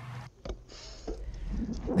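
Low rumble of wind and rolling noise picked up by a camera on a mountain bike's handlebars as the bike rides along a dirt track, with a click about half a second in.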